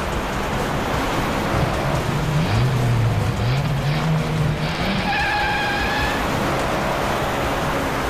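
Cars driving fast: steady engine and road noise, with a low tone that steps up and down in pitch for a few seconds and a high, sharp tone lasting about a second, about five seconds in.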